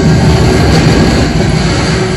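Loud rumbling sound effect from a 3D film's soundtrack, played over cinema speakers, with the film's music held underneath.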